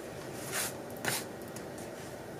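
Paper rustling twice as fingers press and crease a paper pocket down onto a journal page, two short swishes about half a second apart.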